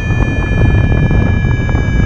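Airflow buffeting the microphone of a paraglider in flight, a loud, steady rushing.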